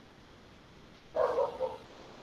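A single short animal call, like a bark or yelp, about half a second long, a little over a second in, over quiet room tone.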